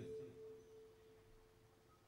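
Near silence, with one faint steady tone held throughout and the last word of speech fading out in the first half second.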